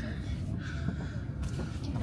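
Steady low rumble of a high-speed train's passenger cabin, with people's voices faintly mixed in and a short hum-like voice sound in the middle.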